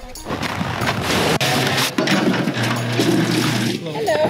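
Water pouring in a steady hissing stream from a refill-station spout into a plastic gallon jug, stopping shortly before the end, over background music.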